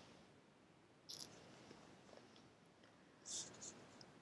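A picture-book page being turned: two brief, soft paper swishes, one about a second in and one near the end, in otherwise near silence.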